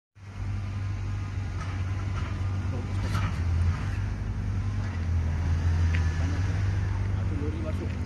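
A steady low rumble, with faint voices coming in near the end.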